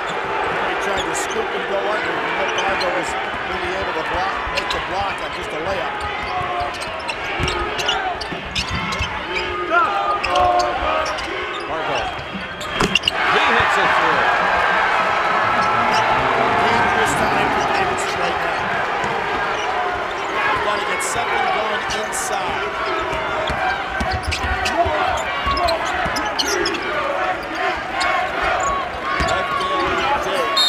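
Basketball game in an arena: a steady crowd murmur with a basketball bouncing on the hardwood court. The crowd gets suddenly louder about twelve and a half seconds in, cheering a made basket.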